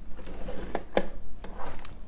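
Paper trimmer being used to score card: a few sharp clicks from the trimmer's sliding blade housing and rail, with light rustling of the paper sheet as it is lined up on the trimmer's grid.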